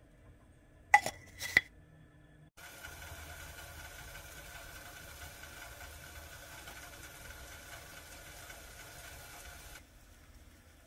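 A stainless coffee scoop clinks three times against a plastic pour-over cone as grounds are knocked into the paper filter, about a second in. Then a steady hiss with a faint high tone from a stainless gooseneck kettle heating on a stove burner starts abruptly and cuts off just before the end.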